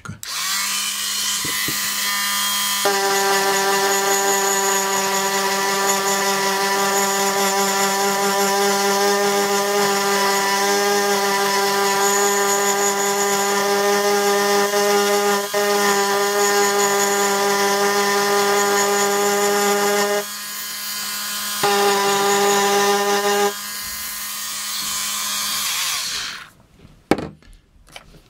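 Hand-held Dremel-type rotary tool with a fine bit running at speed, grinding the black paint coating off the rim of a metal lens adapter. A steady high whine that dips for a moment about two-thirds of the way through, then winds down a couple of seconds before the end.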